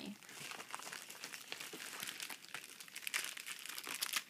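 Plastic packaging crinkling and crackling in the hands, a dense run of small crackles as craft-supply packets are handled.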